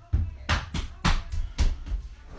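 Footsteps hurrying across a hard floor: a quick run of about seven heavy thumps, three or four a second.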